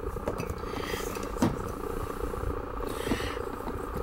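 A steady low hum with a fast flutter in it, like a small motor or fan running, and a couple of light knocks, about a quarter second and a second and a half in.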